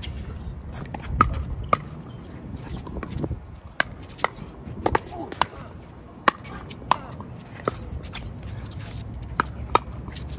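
Pickleball rally: sharp pops of paddles striking the hollow plastic ball, and the ball bouncing on the hard court, about a dozen in ten seconds. The pops are irregularly spaced, some in quick pairs during a volley exchange at the net.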